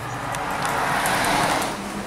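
A car passing on the road, its tyre and engine noise swelling to a peak about one and a half seconds in, then fading.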